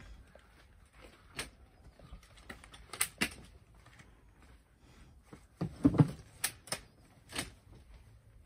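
The aluminium frame of a pop-up scissor canopy tent being worked at its legs: a string of sharp clicks and knocks, the loudest cluster about six seconds in, as the leg sliders are pushed up to lock.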